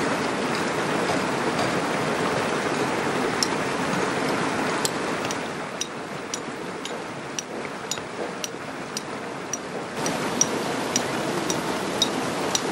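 Steady rushing of water from a mountain stream, with sharp taps of a hammer striking a chisel on stone, about two a second, starting a few seconds in.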